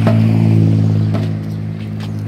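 A hand-held frame drum struck about once a second, over a loud, steady low drone.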